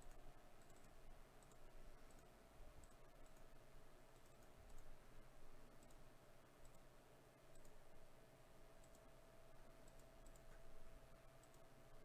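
Near silence: faint, scattered clicks from a computer mouse over a low steady hum.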